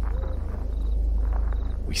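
Crickets chirping in short pulsed trills over a steady low rumble, a night-time ambience bed.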